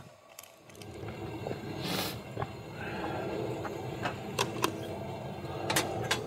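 Portable butane camp stove burner running steadily under a small kettle, the rumble rising about a second in. A short hiss comes about two seconds in, and a few light clicks of gear being handled come near the end.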